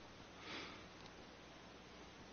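Near silence with faint microphone hiss, broken about half a second in by one short, soft sniff or breath from a man close to the microphone.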